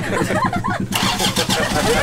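An engine running steadily with a rapid, even low pulse, under people's voices.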